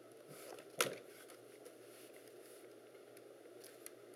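Quiet handling of a plastic notebook computer case: one sharp knock about a second in and a couple of light clicks near the end, over faint room hiss.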